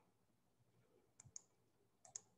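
Near silence, with a couple of faint, short clicks a little over a second in.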